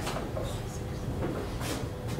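Light handling noises from a white board architectural model as a flat roof piece is lifted off, with a brief scrape near the end, over a steady low hum.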